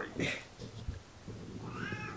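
A house cat meowing, with one drawn-out meow that rises and falls in pitch near the end.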